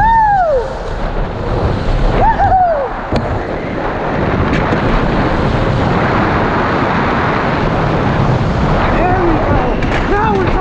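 Steady rush of wind and tyre noise on the onboard microphone as an electric go-kart drives at speed, with no engine note.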